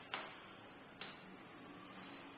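Two sharp clicks about a second apart, the first louder, from presses on the control-panel buttons of an automatic weighing and filling machine, stepping down its set fill weight. A low steady hiss lies underneath.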